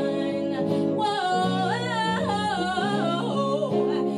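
A woman singing a long melodic run that steps up and down in pitch, from about a second in until near the end, over steady sustained instrumental chords.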